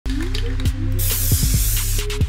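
Electronic intro music with a deep bass beat, and about a second in, the hiss of an aerosol spray-paint can lasting about a second.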